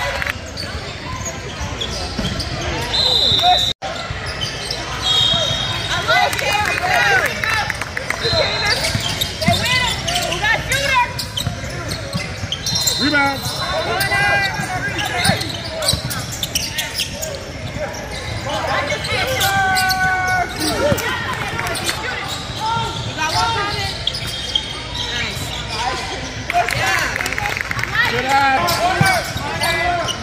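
Basketball bouncing on a hardwood gym floor during play, with voices of players and spectators ringing through a large gym. Short high squeaks come now and then.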